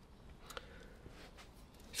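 Near silence: quiet room tone, with a couple of faint clicks about half a second in.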